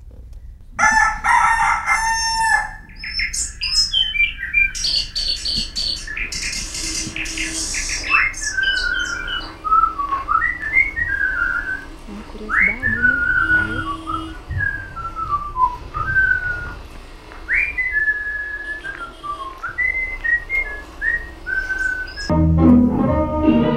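Sound effects for a lambe-lambe box-theatre show: a rooster crowing in the first few seconds, then a long run of short whistled bird chirps with quick rising slides and held notes.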